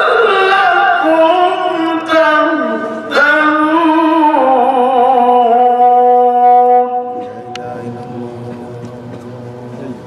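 A man reciting the Qur'an in melodic tajweed style into a microphone, in long ornamented notes that slide and waver in pitch, with brief breaths between phrases. About seven seconds in, his voice falls to a quieter held note.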